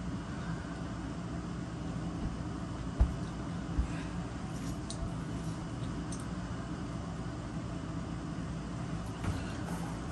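Steady low room hum with two soft thumps about three seconds in and a lighter one near the end.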